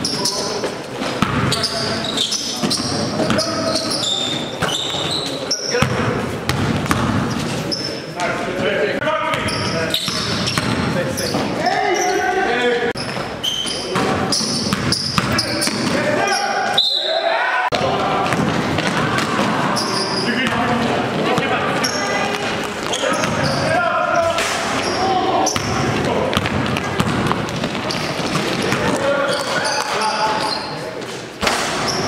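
Basketball game in a gymnasium: the ball bouncing on the court floor among players' voices, echoing in the large hall.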